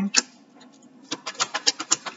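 Tarot cards being shuffled by hand: one card snap just after the start, then from about a second in a quick run of card flicks, about ten a second.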